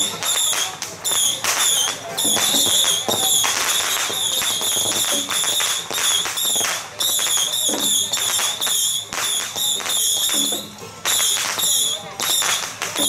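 Dense crackle of firecrackers going off continuously, with a high, wavering tone in short repeated phrases over the top.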